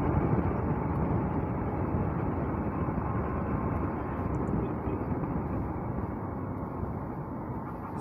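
Wind rushing over the microphone and road noise from a moving motorcycle, a steady rush that gradually quietens toward the end.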